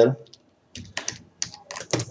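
Typing on a computer keyboard: a short pause, then a quick run of separate key clicks through the second half.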